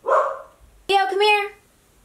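Mini goldendoodle puppy barking: a short bark at the start, then a higher, pitched two-part bark about a second in.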